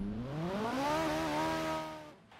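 A motor revving up: its pitch rises steadily for about a second, then holds steady.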